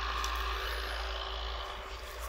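Steady low rumble with a faint even hiss of outdoor background noise; no distinct event stands out.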